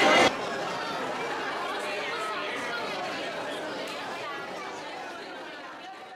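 Crowd chatter: many people talking at once around a serving table, a steady mix of overlapping voices that fades out near the end. A brief louder sound comes at the very start.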